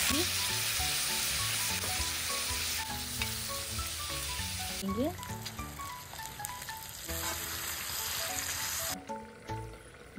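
Pork and onions sizzling steadily as they fry in hot oil in a wok over a wood fire. The sizzle stops abruptly about nine seconds in.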